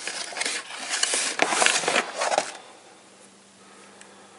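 Cardboard Priority Mail box being handled and opened, its flaps and sides rubbing and scraping against the hands and contents, stopping about two and a half seconds in.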